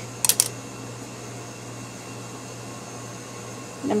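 Steady low room hum, with two brief scratchy rustles a fraction of a second in as a twisted pipe-cleaner coil is handled off a wooden skewer.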